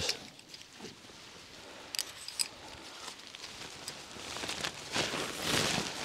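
Small backpacking tent being taken down: a few light clicks about two seconds in as the pegs are pulled, then the tent fabric rustling, growing louder near the end as the tent is collapsed and gathered up.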